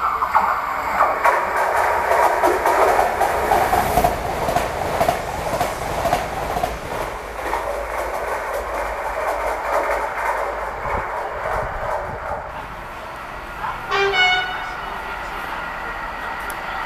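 A passenger train passes through the station at speed, making a loud rushing rumble that dies down after about twelve seconds. About fourteen seconds in, a freight train still some way off gives one short horn blast.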